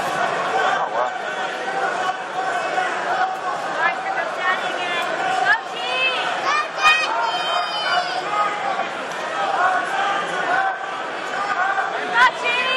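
Hubbub of an arena crowd: many overlapping voices of spectators and coaches talking and calling out in a large hall. A few brief, high-pitched chirps stand out in the middle.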